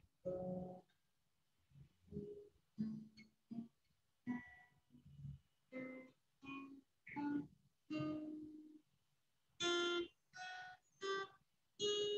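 Acoustic guitar played one note at a time: a slow, unevenly timed run of single plucked notes, a fret-by-fret 1-2-3-4 finger exercise that climbs in pitch across the strings. It comes over a video call, and each note is cut off quickly into silence.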